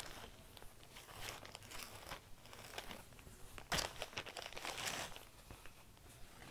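Linen cross-stitch fabric being handled and folded by hand: faint, intermittent rustling and crinkling, a little louder about four seconds in.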